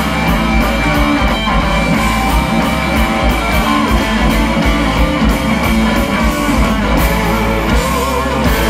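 Live blues-rock band: two electric guitars played through amplifiers over a drum kit, with the cymbals keeping a steady beat.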